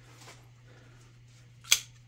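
Emerson CQC-13 folding knife being opened: faint handling, then the blade snaps open and locks with one sharp click near the end.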